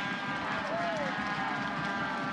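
Outdoor soccer-match ambience picked up by the field microphones: a steady murmur of crowd and players' voices, with one faint distant shout under a second in.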